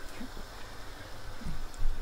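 Chicken curry simmering in a wok: a faint, steady hiss, with a low bump near the end.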